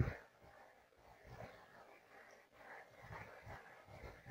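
Metal spoon stirring a thick mix of semolina and curd in a ceramic bowl: a short scrape at the start, then a few faint scrapes.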